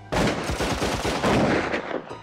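Film-trailer sound effect of rapid automatic gunfire, a dense run of shots lasting nearly two seconds that cuts off suddenly near the end.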